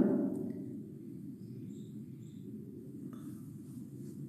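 Quiet, steady low background noise of the room, with no distinct event; a couple of very faint high ticks sound near the middle.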